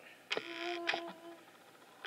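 A video camera's zoom motor whirring for about a second as the lens zooms out, starting with a click and ending with another.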